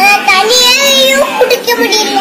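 A young boy's high voice, talking in a drawn-out, sing-song way.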